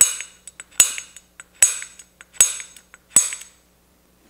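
Spring-loaded automatic center punch with a straight-wall staking tip snapping five times, evenly about once every 0.8 s, each a sharp metallic click with a brief high ring. It is staking an AR castle nut, driving metal into the nut's staking notch.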